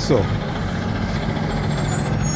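Street traffic: a motor vehicle's engine running steadily under a low, even traffic hum.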